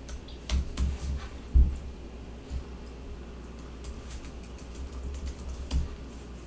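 Typing on a computer keyboard: a quick run of key taps in the first two seconds, then a few scattered taps.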